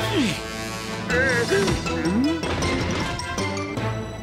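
Cartoon orchestral score under the characters' short cries and grunts, with a comic crash as the young dinosaurs collide and fall in a heap.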